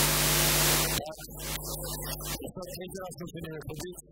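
A loud rush of hiss-like noise over a steady hum cuts off abruptly about a second in, followed by quieter music with voices over the hall's sound system.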